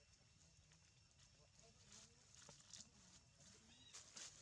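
Near silence: faint outdoor background with a low rumble and a few soft, scattered clicks and rustles.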